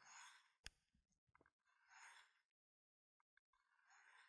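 Very faint strokes of a recurve knife blade drawn across the coarse ceramic rod of a Work Sharp Guided Field Sharpener: three soft swishes about two seconds apart, with a tiny click about two-thirds of a second in.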